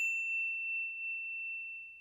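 A single high, bell-like ding on the outro logo animation: struck once, then ringing as one steady tone that slowly fades away.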